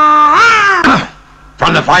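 A long, drawn-out cat-like yowl from a snarling fighter, swelling up in pitch and then falling away about a second in. A man starts speaking near the end.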